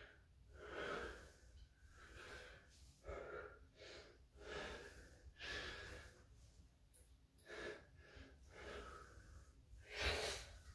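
A man's faint, heavy breathing, short breaths about once a second, out of breath from the strain of a set of pull-ups.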